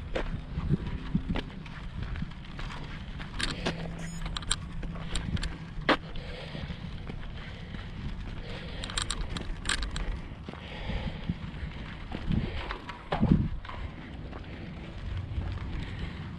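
Footsteps on a dirt trail while walking uphill, over a steady low rumble of wind on the microphone, with a few sharp clicks and knocks scattered through.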